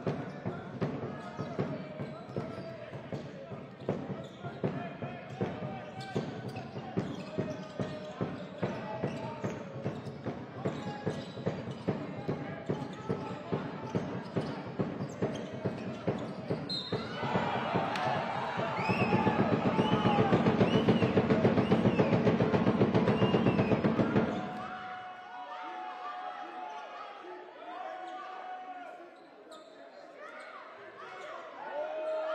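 Basketball dribbled on a hardwood court, regular bounces about twice a second, with sneaker squeaks. From about two-thirds of the way through, a louder stretch of shouting voices and shoe squeaks lasts several seconds, then drops to quieter voices near the end.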